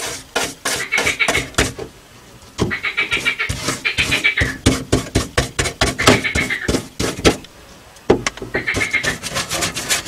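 Brush working fibreglass resin into matting on a steel floor pan: rapid wet dabbing and scraping strokes, with short squeaky notes every second or two.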